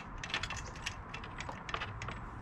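Ratchet wrench clicking in short, irregular runs while the bolts of a motorcycle rearset are turned.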